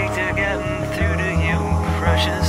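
Karaoke-style rock song: a man's sung vocal over a backing track, with a rapid pulsing low beat from about a second in.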